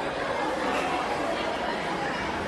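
Indistinct chatter of many voices talking at once, steady throughout.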